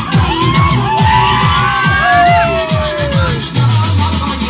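Loud dance music with a fast, steady beat, played for dancers, with high gliding tones sliding over it.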